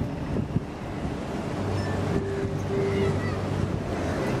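Wind buffeting the microphone over open-air riverside city ambience, with a steady low hum coming in about a second and a half in.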